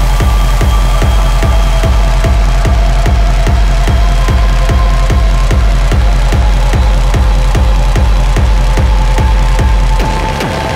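Loud electronic dance track: a heavy kick drum pounding steadily at a little over two beats a second under sustained, droning synth tones.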